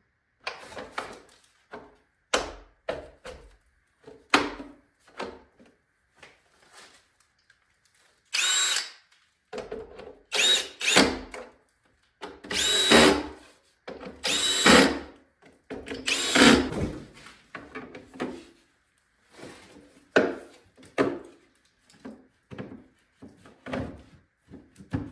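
Cordless drill-driver driving in the screws that hold the plastic cover of an electrical distribution board: a string of about six short runs in the middle, each under a second. Scattered clicks and knocks come before and after.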